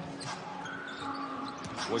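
Basketball bouncing on a hardwood arena court, heard over steady crowd noise and arena music.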